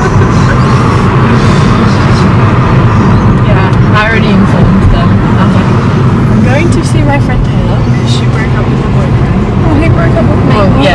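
Steady low road and engine rumble inside a moving car's cabin, with a few short bursts of voice about four and seven seconds in.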